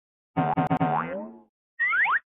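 Cartoon-style sound-effect logo sting. A pitched tone pulses four times in quick succession, then bends upward and fades. Near the end come a few quick rising whistle slides.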